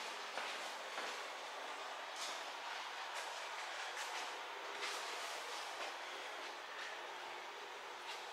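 Faint steady hiss with a few light clicks scattered through it.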